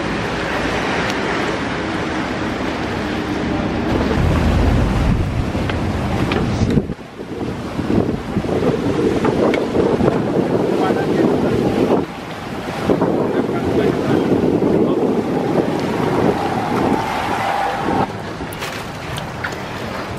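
Wind buffeting the microphone over the steady rumble of speedboat engines and water sloshing against the hulls, broken by two sudden shifts in the sound.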